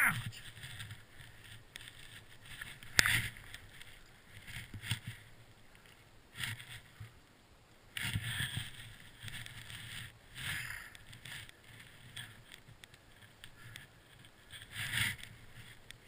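Skis swishing through deep powder snow, turn after turn, in irregular bursts a few seconds apart over wind on the microphone, with one sharp knock about three seconds in.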